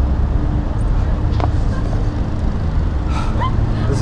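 Steady low outdoor rumble, with a single short knock about a second and a half in and a brief voice near the end.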